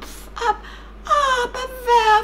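A woman's voice in a high, whimpering character voice, wailing out short pleading phrases whose pitch slides downward: a storyteller voicing a frightened rabbit begging for mercy.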